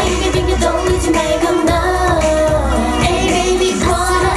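K-pop dance song with female singing, played loud over a stage sound system with a heavy, steady beat.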